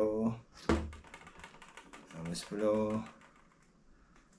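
A man's voice briefly at the start and again near three seconds in, with a sharp knock just before one second and a run of small, quick clicks in between, like small hard objects being handled on a table.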